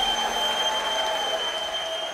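Audience applause, with a steady high tone held above it.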